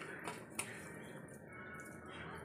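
Faint wet squishing and small clicks of a hand rubbing turmeric and salt into raw tengra catfish on a steel plate, with the sharpest click about half a second in.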